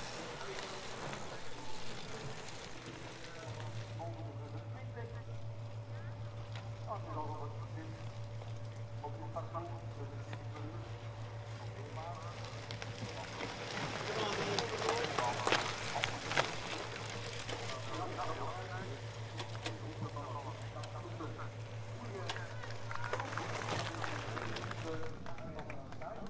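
Course-side ambience at a cyclocross race: scattered spectators' voices over a steady low hum, which grows stronger a few seconds in. The noise rises for a few seconds around the middle.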